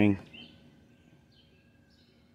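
A man's voice trailing off at the very start, then near silence with only a faint, thin, steady high tone in the background.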